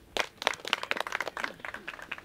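Scattered clapping from a small group of spectators, a quick patter of claps that thins out after a second and a half.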